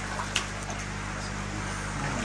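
Water splashing and churning in a koi holding tank as koi thrash in a landing net lifted out of the water, over a steady low machine hum.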